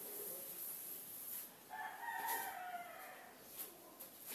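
A faint, distant bird call, likely a rooster's crow: one drawn-out call of about a second, starting a little under two seconds in and falling slightly at the end.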